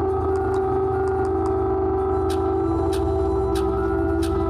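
Electronic music: a drone of several held steady tones over a low bass, with a few sharp clicks in the second half.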